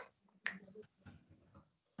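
A sharp computer mouse click about half a second in, followed by a few faint keyboard keystrokes as a username is typed.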